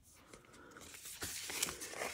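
Paper washi sticker roll being pulled out and unrolled across a tabletop: a paper rustle and crackle that builds from about half a second in, with a couple of small ticks.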